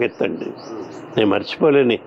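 A man speaking in short phrases, with faint bird chirps in the background.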